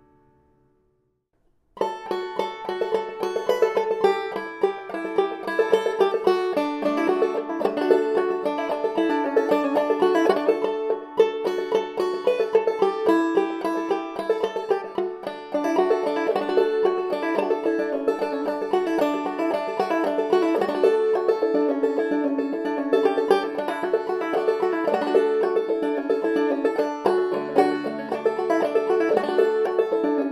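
OME 12-inch Minstrel open-back banjo played solo: after a brief near silence, a busy run of plucked notes starts about two seconds in and carries on without a break.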